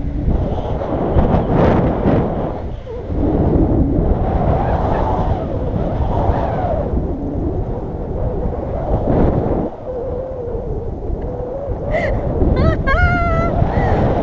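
Wind rushing and buffeting over an action camera's microphone during a tandem paragliding flight. Near the end, a woman's voice rises into excited cries.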